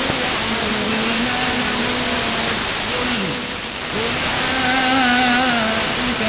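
Quran recitation heard over FM radio: a reciter's voice holding long, drawn-out, slowly wavering notes with a short break midway. A steady hiss of static lies under it, the sign of a weak, distant signal received by sporadic-E skip.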